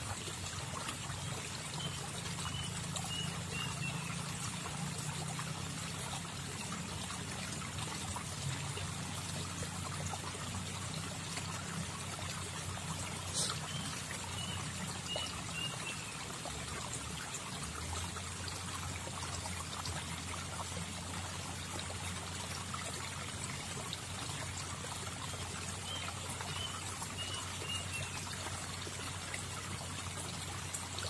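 River water trickling and flowing steadily. A high animal call of four or five quick notes comes three times, about twelve seconds apart, and there is a single sharp click about 13 seconds in.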